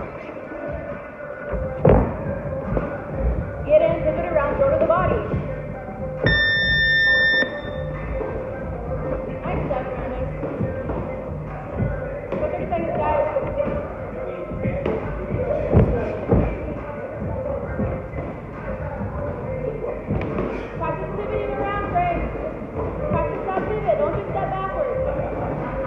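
Boxing gloves landing in sparring: scattered thuds of punches on gloves and headgear, over background music and voices echoing in a large gym hall. About six seconds in, an electronic beep sounds for about a second.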